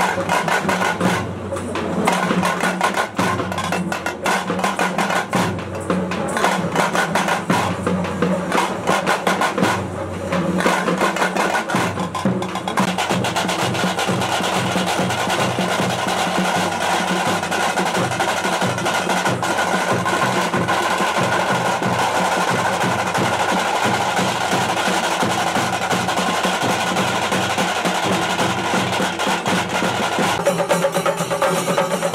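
Several double-headed barrel drums played by hand and stick in a fast, driving rhythm. The beat has short breaks at first and runs unbroken from about twelve seconds in.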